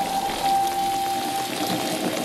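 Steady rain falling on an umbrella, with a soft held note of background music underneath.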